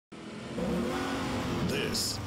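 A car engine revving, its pitch rising and falling, starting abruptly just after the start.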